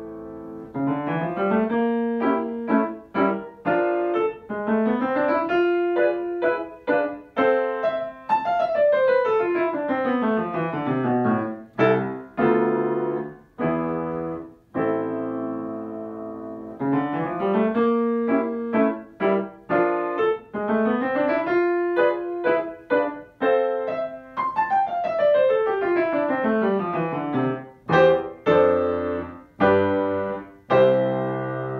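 Solo piano playing a fast passage. Short rising figures lead into long descending runs, and the whole passage repeats about halfway through. Loud, detached chords come near the end.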